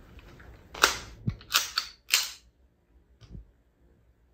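A pistol being loaded by hand: a quick run of about five sharp metallic clicks and clacks as the magazine is pushed into the grip and the gun is handled, then one faint click.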